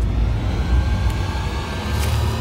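A deep, steady rumble with faint high held tones above it, from a film trailer's soundtrack.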